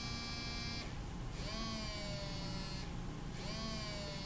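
A smartphone's vibration motor buzzing on a wooden tabletop. It runs in repeated pulses of about a second and a half, with short pauses between them. This is a vibration test, and the motor is working correctly.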